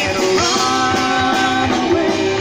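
Live rock band playing through outdoor stage PA speakers: a steady drum beat under guitar, with one note held for about a second.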